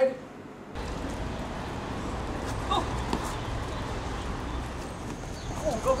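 Steady outdoor background noise, a low rumble with a hiss over it, with a faint distant voice about two and a half seconds in. A shout of "go" comes right at the end.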